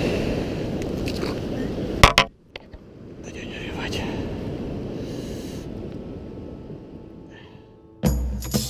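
Rushing river water with wind on the microphone, cut off by a sharp knock about two seconds in; after that it is much quieter, with a man's voice speaking softly.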